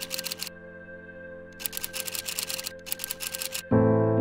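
Rapid typing clicks in two bursts, a text-typing sound effect, over a soft sustained music pad. Near the end a loud piano chord comes in and rings on.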